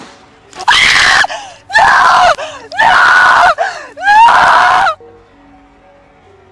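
A person screaming four times in quick succession, each scream loud, high-pitched and about half a second long, roughly a second apart. Faint background music runs underneath.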